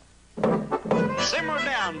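Cartoon soundtrack music under a voice, starting suddenly after a brief hush.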